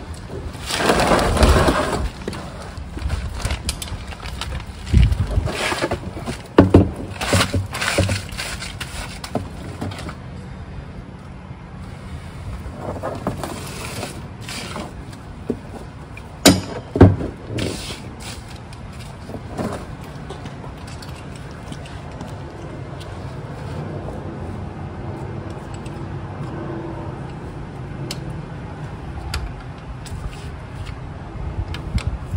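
Scrapes, clicks and knocks of hand tools being handled under a vehicle as a 3/8-inch ratchet and socket are fitted to the transfer case fill bolt. A longer scrape comes about a second in, and two sharp knocks, the loudest sounds, come a little past the halfway mark.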